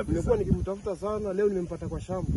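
Speech: men talking.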